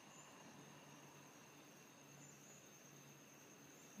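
Near silence, with a faint, steady, high-pitched insect drone, such as crickets, running underneath.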